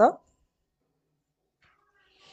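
A single short spoken word at the very start, rising sharply in pitch and cut off after a moment, then near silence with only faint traces near the end.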